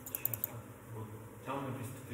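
A quick run of about four clicks from a computer keyboard, followed by quiet low muttering from a man from about one and a half seconds in.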